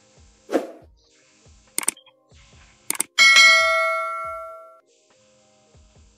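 Sound effects for an animated subscribe-button graphic: a short pop near the start, two quick double clicks, then a bright bell ding that rings out and fades over about a second and a half.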